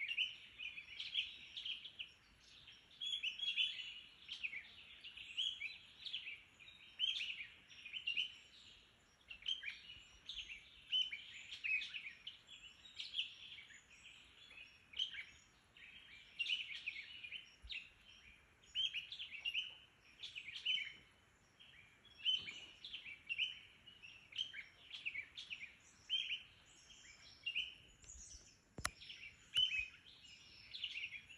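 Birds chirping and singing without pause, short high phrases following one another about every second.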